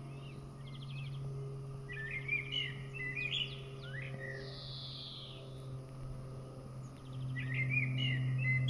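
Songbirds singing outdoors: scattered chirps and short warbled phrases, busiest a couple of seconds in, over a steady low hum that grows louder near the end.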